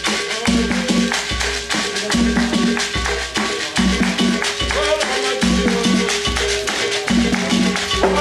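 Bamoun folk music with dense, shaken rattle-like percussion over a repeating low beat and sustained pitched notes.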